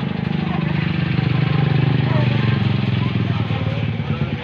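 Small motorcycle engine running close by, with a steady low pulsing note that builds over the first couple of seconds as the bike moves off.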